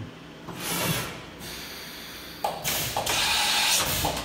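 Double-arm automatic tool changer of a Feeler VMP-40A vertical machining centre swapping tools in the spindle: a whir of movement early on, a sudden clunk about two and a half seconds in, then a loud hiss for about a second and a half. The change is fast, about two seconds tool to tool.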